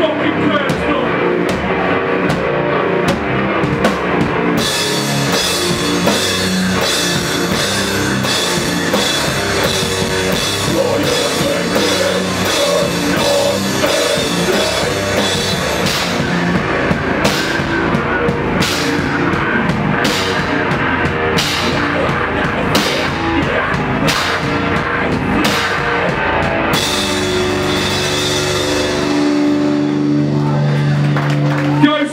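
Hardcore band playing live: distorted guitars, bass and drums with a vocalist shouting into the microphone. About halfway through the band drops into a slow breakdown, a crash cymbal struck on each heavy beat, a bit more than once a second; near the end the guitars hold a long ringing chord.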